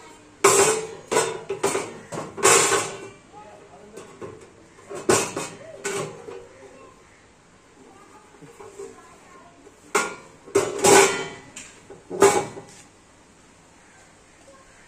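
Thin galvanized sheet-metal box being handled: sharp metallic clanks and rattles with short ringing, coming in three clusters (near the start, around five to six seconds in, and again toward the end).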